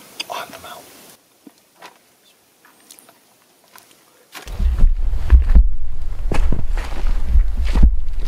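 Faint rustling and a few soft clicks, then about halfway in, footsteps on rocky, grassy ground, about two a second, over a heavy low rumble from the handheld camera being carried while walking. The rumble is the loudest sound.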